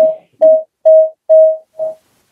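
A series of short electronic beeps, all at one mid pitch, repeating about twice a second with five in quick succession.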